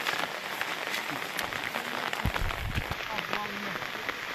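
Rain pattering steadily on the ground and pond surface, a dense spread of small ticks. A few dull low thumps come a little past halfway, and a brief voice is heard near the end.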